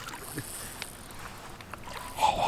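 Faint water sloshing and light splashing from a small hooked carp struggling at the pond surface.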